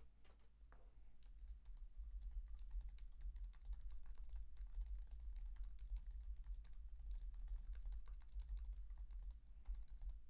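Typing on a computer keyboard: a quick, faint run of light key clicks, picking up about a second in, over a low steady hum.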